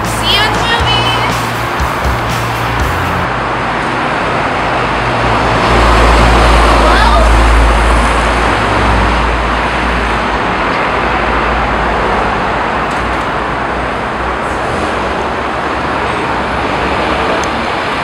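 Background music that stops about three seconds in, then city street traffic noise, with a vehicle passing close by and loud, low rumbling from about six to nine seconds in.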